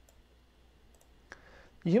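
A few faint computer mouse clicks over quiet room tone, the sharpest one about a second and a half in, as text is selected on screen. A voice starts speaking right at the end.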